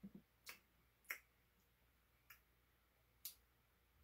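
Near silence: quiet room tone broken by a handful of faint, sharp clicks spread over the four seconds, the clearest about a second in.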